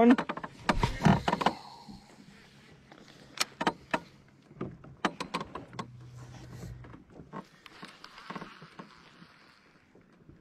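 Sharp clicks and knocks of a baitcasting rod and reel being handled in a small boat, with a louder handling bump about a second in and a soft rushing noise for about two seconds near the end.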